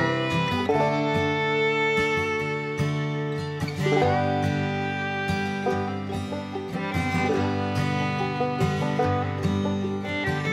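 Background music: an acoustic country/bluegrass-style tune with plucked strings and fiddle.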